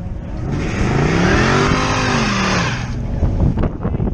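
A car driving past on wet pavement. Its engine note rises and then falls over about two seconds, with a strong hiss of tyres on wet asphalt.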